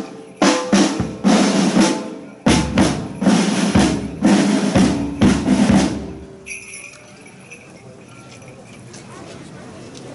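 Marching-band snare drums and a bass drum playing a march cadence, with loud accented hits about once a second between rolls. The drumming stops about six seconds in, leaving the quieter background sound of the procession crowd.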